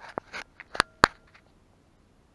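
Handling noises while working at the underside of a motorcycle engine: a few light clicks, then two sharp clinks about a second in, the second with a brief ring.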